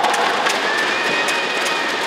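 Ice hockey game in an arena: a steady noisy rink and crowd din with a few sharp clicks of sticks and puck on the ice during play in front of the net.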